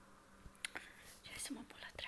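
A woman whispering softly, breathy and faint, with a few small clicks about half a second in.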